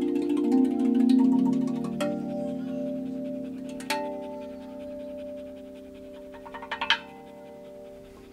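Rav Vast steel tongue drum played by hand: several notes struck in the first two seconds and two more at about two and four seconds in, each ringing on with a long, slowly fading sustain. A short run of sharp clicks rises to a peak near the end.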